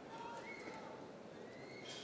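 Faint background murmur of the room, with a few distant, indistinct voices drawing out sounds that slowly rise in pitch.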